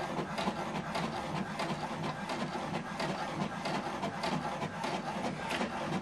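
HP DeskJet 2820e inkjet printer printing a page, its mechanism running steadily with rapid, evenly repeated clicks as the sheet feeds through.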